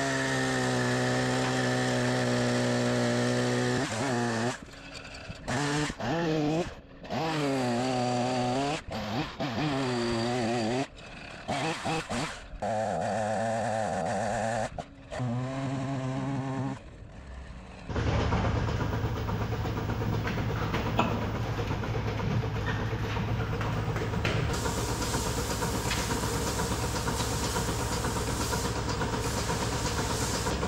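Gas chainsaw running at high revs and bucking logs, its pitch rising and falling as it cuts, with short drops back toward idle between cuts; the saw is running again after a clogged air filter was cleaned out. About 18 s in it gives way to a steady hiss and low hum of milking-parlor machinery.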